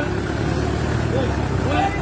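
Outdoor market ambience: a steady low rumble with background voices, during a short gap in the man's speech.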